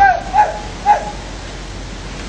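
A dog yipping: three short, high yelps about half a second apart in the first second, over a steady low hum.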